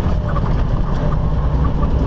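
Steady low drone of a semi truck's diesel engine and road noise, heard inside the cab while driving.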